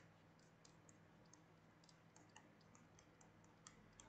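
Near silence with faint, irregular light clicks, several a second, from a stylus tapping a pen tablet during handwriting, over a faint steady low hum.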